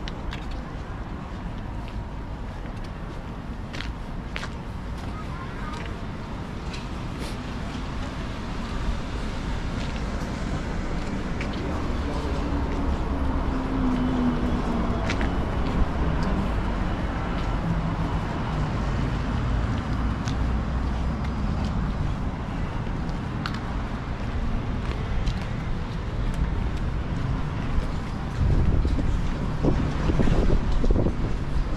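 City street ambience: road traffic running past alongside, swelling louder about a third of the way in and again near the end, with scattered sharp clicks such as footsteps on the paving.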